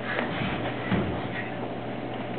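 Quiet hall room tone with a steady low hum and faint background murmur, and a soft low thump about a second in.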